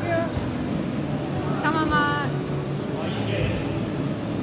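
Busy indoor gym ambience: a steady low hum under background voices, with one voice calling out briefly, falling in pitch, about two seconds in.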